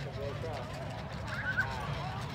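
Distant voices of children and adults chattering at a playground, with one brief higher-pitched child's call about one and a half seconds in.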